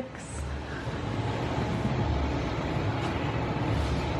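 Steady low rumble of room noise with a soft, deep pulse repeating about once a second.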